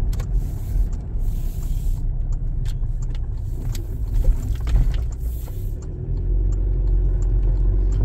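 Inside a Toyota Fortuner's cabin on the move: steady low engine and road rumble, with occasional faint clicks and rattles. About six seconds in, the rumble settles into a steadier, slightly louder drone.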